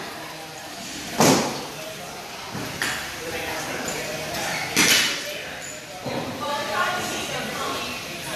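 Two loud, sharp thuds about three and a half seconds apart, with a softer knock between them, echoing in a large gym hall over background chatter.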